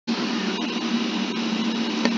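Steady rushing background noise with a low, even hum underneath, starting abruptly just after the beginning and holding at a constant level.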